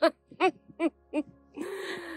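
A woman laughing: four short, evenly spaced bursts of laughter, then a breathy out-breath near the end.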